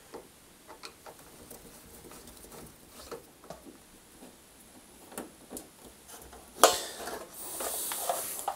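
Light clicks and ticks of a hand screwdriver turning out a screw from the plastic heater wiring cover on a tumble dryer's metal back panel. About six and a half seconds in, a louder scrape with a trailing hiss as the cover is handled.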